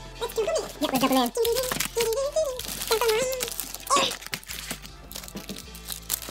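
Foil trading-card packs crinkling and rustling as they are handled, with scattered sharp crackles that come thicker near the end, under a drawn-out voice.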